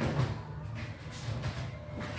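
Martial-arts point sparring: feet stepping and shuffling on the floor, with a dull thump about a quarter second in, over a steady low room hum.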